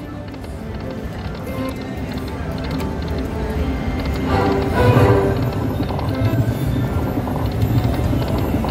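Buffalo Chief video slot machine playing its game music and reel-spin sounds while the reels spin, building to its loudest about five seconds in.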